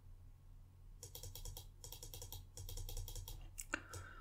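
Faint, rapid clicking of computer keyboard keys in quick runs, while a setting is entered on the computer.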